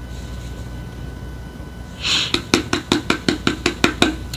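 A plastic product bottle being banged repeatedly upside down to work out the last of a nearly empty curl and style milk: after a quiet first half and a short hiss, a rapid run of sharp knocks, about six a second.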